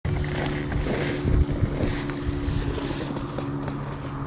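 Wind rumbling on the microphone in irregular gusts, loudest about a second in, over a steady low mechanical hum.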